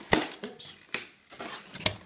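Handling noise from a foam model airplane being moved about by hand: three sharp knocks, the loudest at the start and near the end, with faint rubbing between them.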